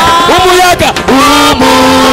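Congregation singing loudly in worship, with a long held note through the second half.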